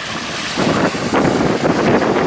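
Wind buffeting the camera microphone, a rough rushing noise that surges unevenly in gusts.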